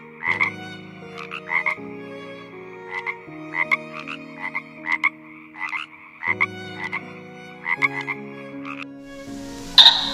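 Frogs croaking in short, irregular repeated calls, sometimes several a second, over soft background music of held low notes that change every second or two; a louder burst comes right at the end.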